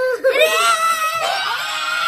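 A child screaming at the top of her voice: one long, high, held scream starting about half a second in.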